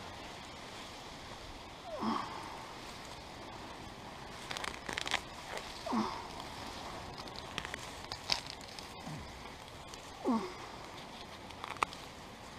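Grass being pulled by hand from wet soil, in crackly bursts of tearing roots and rustling blades. A few short calls sliding down in pitch, from an animal, come about every four seconds.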